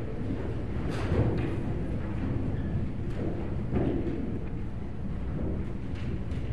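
A congregation rising to its feet from wooden pews: shuffling, rustling and a few soft knocks, over a steady low hum.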